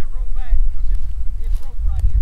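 Wind buffeting the microphone outdoors, a loud, uneven low rumble, with a faint voice speaking near the start.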